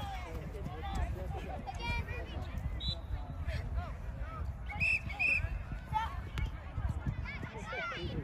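Scattered, overlapping voices of players and sideline spectators calling out across an outdoor soccer field, with two short high-pitched calls about five seconds in. A low rumble runs underneath.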